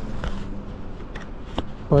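Handling noise from a small camera being moved and repositioned: rustling and a few faint clicks against a quilted jacket, over a low wind rumble on the microphone.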